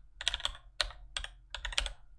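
Computer keyboard being typed on: a quick, uneven run of about nine key clicks as a short word is typed out.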